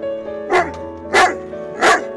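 A dog barking three times, about two-thirds of a second apart, over steady background music.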